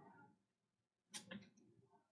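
Near silence, broken a little over a second in by a brief faint noise made of two quick blips.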